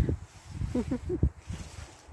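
A few low bumps and rustles close to the microphone, with a brief murmured syllable or two from a woman's voice in the middle.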